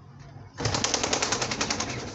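A pigeon flapping its wings hard, a quick run of wingbeats starting about half a second in and lasting about a second and a half.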